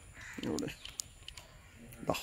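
A single short harsh call about half a second in, with a few faint clicks as the button beside the instrument display is pressed.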